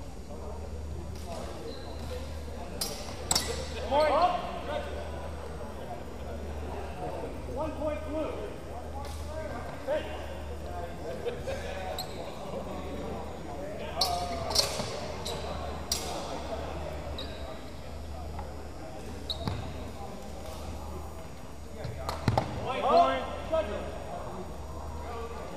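Longsword sparring: scattered sharp strikes of blade on blade, some ringing briefly, with knocks on a hard floor and bursts of shouting voices. A steady low hum runs underneath.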